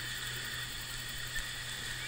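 Steady outdoor background: an even high hiss over a low steady hum, with no distinct event.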